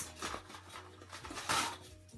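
Packaging being handled: faint rustling and light knocks from a small cosmetics box as a coin purse is taken out, with one brief louder rustle about one and a half seconds in.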